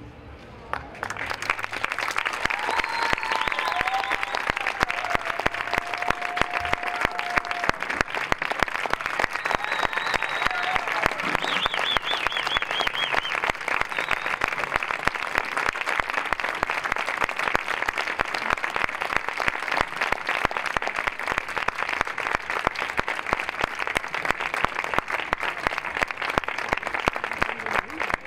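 Audience applauding, the clapping starting about a second in and continuing steadily, with a few shouts from the crowd over it in the first half.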